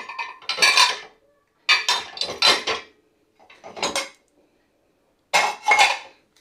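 Ceramic plates and bowls in a dishwasher rack clinking and clattering against one another as they are handled, in about four short bursts with brief pauses between them.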